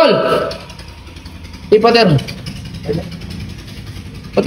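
A person's voice in short, loud exclamations with a bending pitch and no clear words: one right at the start, another about two seconds in, and a faint one near three seconds.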